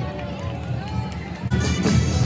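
A man's voice over the public address fades out. About a second and a half in, a street band starts up with drums and a wind instrument.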